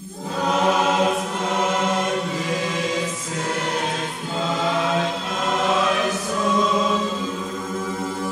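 Choir singing a slow, sustained chant over a steady low held note, coming in suddenly.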